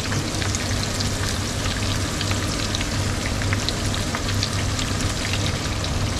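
Eggs and pieces of syglino (salted smoked pork) sizzling in hot olive oil in a frying pan, a steady crackle with many small pops, over a low steady hum.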